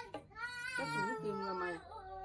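A high, drawn-out, wavering cry, with a lower voice joining in about a second in.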